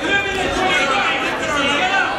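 Overlapping voices of spectators and coaches talking and calling out around the wrestling mat.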